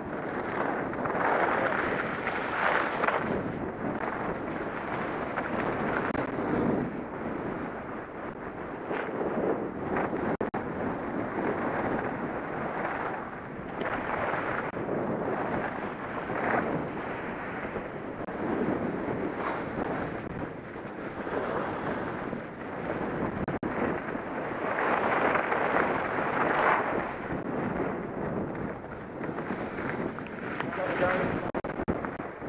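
Wind rushing over a helmet-mounted camera's microphone while skiing downhill, mixed with skis scraping over packed snow. The rush swells and eases every couple of seconds as the skier turns.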